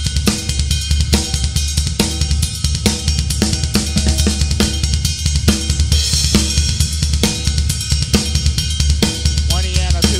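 Ludwig drum kit with Paiste cymbals playing a swing shuffle groove: triplets on the ride, snare on two and four, and a steady run of double bass drum strokes underneath. A cymbal crash rings out about six seconds in.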